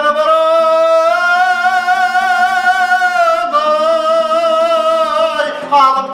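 Male singer performing a traditional Kazakh song, holding two long notes with a wide vibrato, the first about three and a half seconds long, over a plucked dombra accompaniment.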